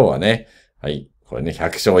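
A man speaking Japanese, with a short pause about halfway through.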